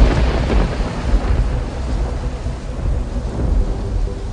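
Recorded thunder rumbling over steady rain, the storm effect that opens the soundtrack song. It starts suddenly and loud, then eases, and a faint held musical note comes in near the end.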